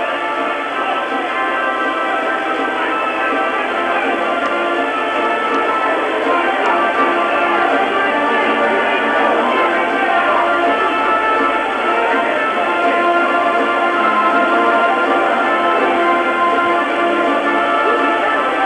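Music with many held notes and chords changing slowly, played at a steady level.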